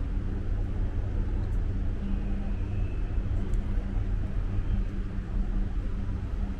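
Steady low mechanical drone with a constant hum from a docked cruise ship's onboard machinery running at berth. A faint high whine comes in about two seconds in and fades a second or so later.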